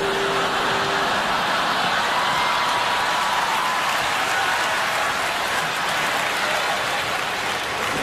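Large theatre audience applauding, a steady even wash of clapping.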